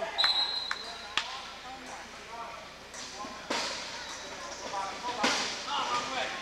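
A referee's whistle blown once, a single steady shrill note lasting about a second near the start. It is followed by a few sharp knocks and bangs that echo in the hall, with voices in the background.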